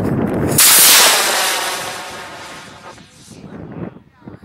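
A model rocket's solid-fuel motor ignites with a sudden loud rush of exhaust about half a second in. The rocket climbs away and the hiss falls in pitch and fades over the next two to three seconds.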